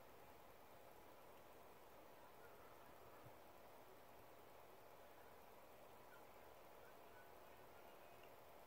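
Near silence: faint steady hiss of the recording's background.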